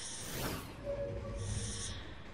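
Motion-graphics outro sound effects: a whoosh about half a second in, then a brief tone over a low rumble, with short bursts of high hiss near the start and end.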